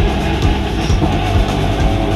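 Live rock band playing an instrumental passage: electric guitars over a drum kit keeping a steady beat.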